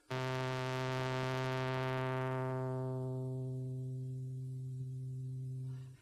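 Minimoog analog monophonic synthesizer holding one steady low note while its low-pass filter cutoff is turned down. The tone starts bright and buzzy and grows steadily duller over about three seconds as the highest harmonics are cut away first. The note stops near the end.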